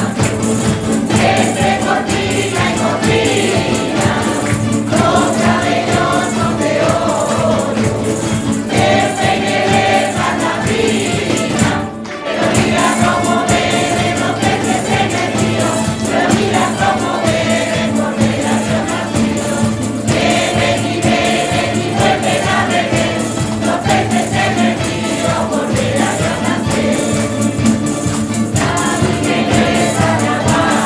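A mixed folk choir singing a Christmas carol, accompanied by a plucked-string ensemble of guitars and lutes.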